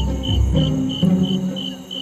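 Jungle ambience of crickets chirping in an even high-pitched rhythm, about four chirps a second. Under it, a deep low boom in the first half-second gives way to low held music notes.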